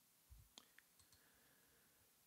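Near silence with a few faint computer-keyboard clicks, grouped between about half a second and a second in.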